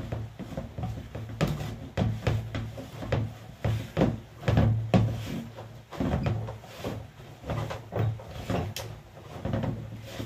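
Flour dough being kneaded by hand in a plastic bowl, the bowl knocking on a stainless-steel counter with each push. It makes repeated dull knocks, about two a second, with a short pause near the middle.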